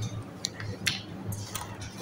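A few short, sharp clicks, three or four spread across two seconds, over a steady low hum of room noise.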